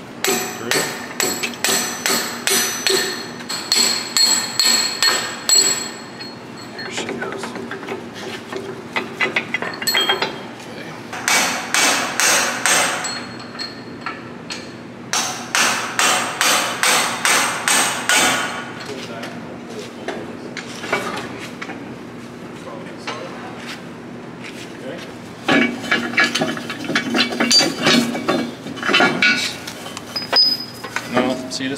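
Hammer striking a steel punch to drive a pin out of a planter's two-point hitch: four runs of rapid metal-on-metal blows, about four a second, each run lasting a few seconds, with a ringing metallic tone.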